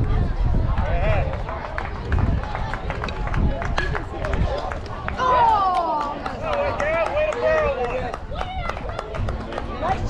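Spectators and players calling out and shouting at a baseball game, the voices loudest and most drawn-out from about five to eight seconds in. A steady low rumble of wind on the microphone runs underneath.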